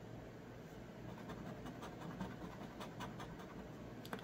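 A coin-shaped scratcher rubbing the coating off a lottery scratch ticket: faint, irregular scratching.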